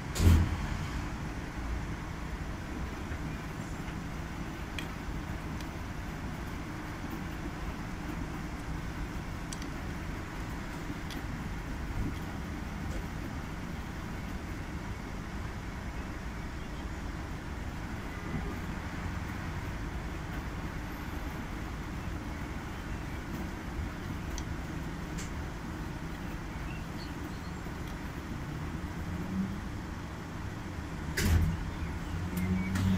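Commercial front-loading washing machine in its wash phase: the motor hums steadily as the drum tumbles wet laundry through the water, with a single loud thump just at the start.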